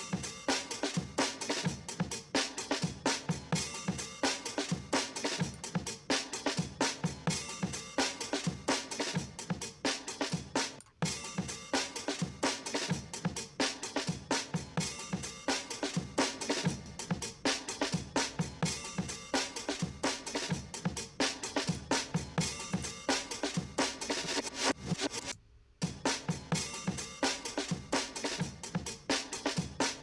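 Recorded drum kit playing back in a steady groove of kick and snare hits while being equalised in a mix. The playback cuts out briefly twice, about eleven seconds in and again near twenty-five seconds.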